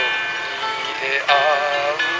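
A man singing to his own acoustic guitar accompaniment, a slow ballad; in the second half his voice holds a long, wavering note over the strummed chords.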